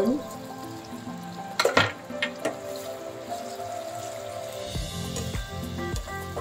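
Background music with held tones runs throughout, and a low beat comes in near the end. About two seconds in there are a couple of sharp knocks and splashes as spears of baby corn are dropped into a pan of simmering sauce.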